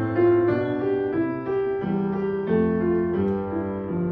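Upright piano playing a slow, gentle classical accompaniment on its own, without the voice, its notes and chords changing about every half second.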